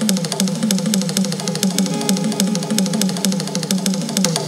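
A live band playing instrumental music: a fast, steady drum beat under a repeating melodic phrase.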